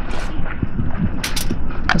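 A metal fork scraping and tapping sliced mushrooms out of a plastic tray onto aluminium foil, a few short scrapes and clicks, over a low rumble that runs throughout.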